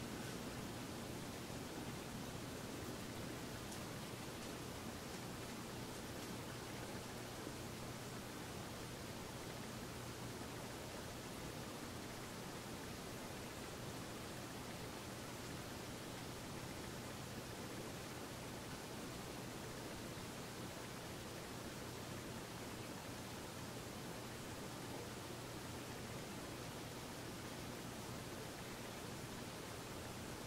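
Steady faint hiss with a low, even hum underneath: room tone and recording noise, with no distinct sounds standing out.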